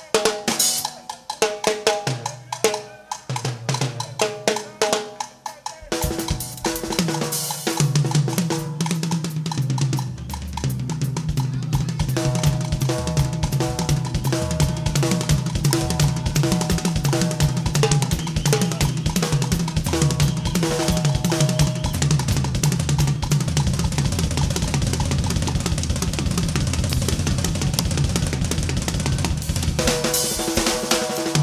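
Drum kit played in a live solo passage: spaced-out hits for the first six seconds or so, then a dense, continuous rhythm on drums and cymbals that runs on without a break.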